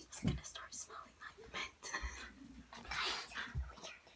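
Soft whispering close to the microphone, with light taps, clicks and handling sounds of objects and a short hiss about three seconds in.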